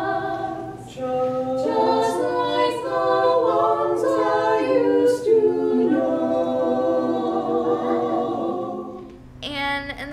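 A mixed-voice caroling quartet singing a cappella in close harmony, holding sustained chords that change in steps, with short breaths about a second in and about six seconds in. The singing fades out about nine seconds in, and a woman's speaking voice begins just before the end.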